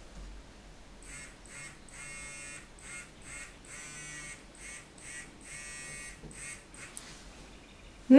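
Faint buzzing of a vanav Time Machine galvanic facial device running in a pulsed vibration mode. It repeats a pattern of two short buzzes and one longer buzz about every two seconds while the metal head is drawn along the jawline.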